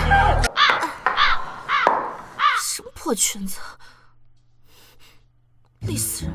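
Background music cuts off about half a second in, followed by a woman's wordless vocal sounds: several short calls that rise and fall in pitch, the last ones sliding down. It goes nearly quiet for the final two seconds.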